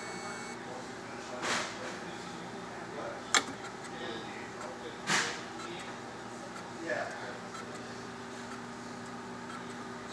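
Thermo Microm HM 355S motorized microtome powered on, giving a steady hum; a higher whine cuts off about half a second in. A few soft swishes and one sharp click about three seconds in break the hum.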